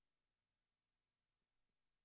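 Near silence: a black screen with only faint background hiss.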